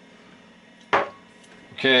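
A single short knock about a second in, the sound of a metal aerosol can of contact cleaner being set down on the wooden workbench.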